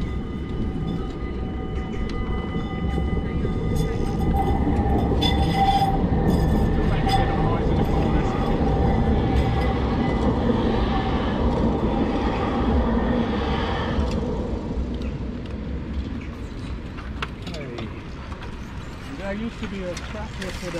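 A CAF Urbos electric tram passing close by on its rails, with a low rumble and a steady electric whine. It is loudest through the middle and fades away near the end as the tram moves off.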